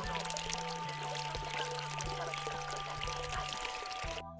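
Water spouting steadily from a pipe and splashing into a stone basin full of water, under steady background music.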